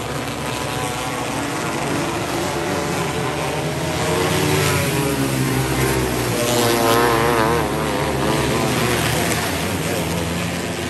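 Winged micro sprint race cars running hard around a dirt oval, their engines revving up and easing off through the turns. The sound builds and is loudest from about four to eight seconds in as cars pass close, with a wavering pitch near seven seconds.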